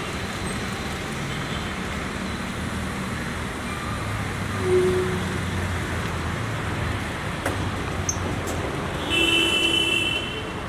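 City street traffic: a steady hum of vehicle engines and road noise. A short steady tone sounds about five seconds in, and a brief cluster of higher tones sounds near the end.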